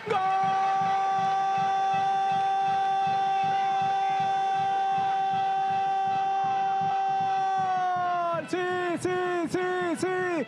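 A football commentator's goal call: one long held "goooool" cry lasting about eight seconds, then breaking into short repeated "gol" shouts near the end.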